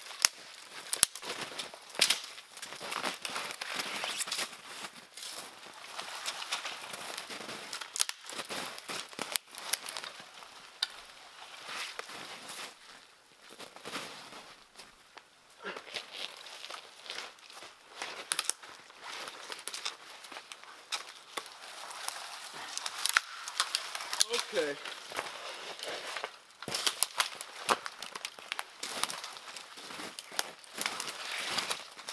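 Dry twigs and dead branches snapping and crackling with irregular sharp cracks, over the rustle of brush being pushed through and steps in snow. A short vocal sound comes about three-quarters of the way through.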